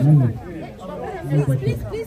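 Several people talking close by, overlapping voices with crowd chatter behind them.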